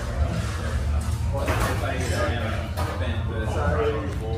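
Indistinct voices of people talking in a pub's bar room over a steady low hum.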